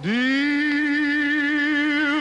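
A solo singing voice slides up into a long held note and sustains it with vibrato.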